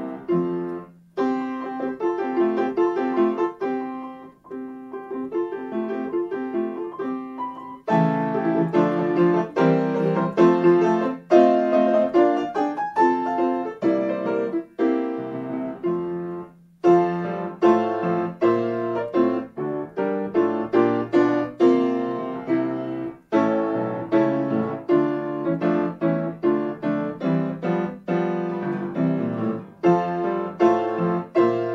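Solo grand piano playing a march in full chords. A softer passage comes first; from about eight seconds in the playing grows louder and fuller, with brief breaks between phrases.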